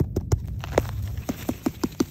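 Fingers tapping on a mushroom: a quick, slightly uneven run of short sharp taps, about four or five a second.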